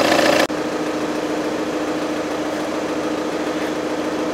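2.0-litre TDI turbodiesel engine idling, heard loud and close from beneath the car. About half a second in it cuts off abruptly to a quieter, steady hum with a faint low tone.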